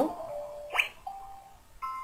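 A few brief whistle-like tones: a held note, a quick upward sweep about three-quarters of a second in, another short held note, and a brief chime-like note near the end.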